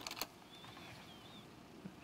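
Quiet studio room tone with two or three soft clicks near the start and a faint, wavering high squeak about half a second later.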